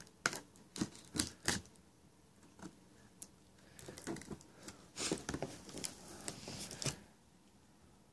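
Small folding pocket knife cutting along packing tape on a TV box: a few sharp clicks in the first second and a half, then a run of scratchy slicing strokes from about four to seven seconds in that stops abruptly.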